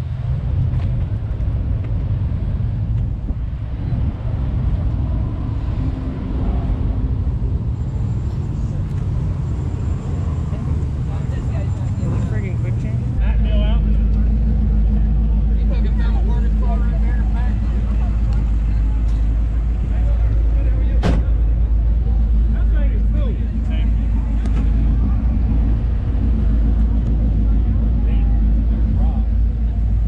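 Steady low rumble of outdoor background noise, which gets heavier after a cut about 13 seconds in, with faint voices of people talking in the background.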